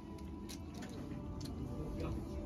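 Low indoor room tone in a shop, with a faint steady tone and a few short faint clicks, about half a second and a second and a half in.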